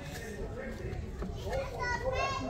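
Indistinct background voices of people and children talking, with a high child's voice coming in near the end.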